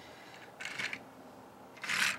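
Faint handling of a plastic Transformers toy car on a tabletop as it is picked up and tilted: two short soft rustles, the second and louder near the end.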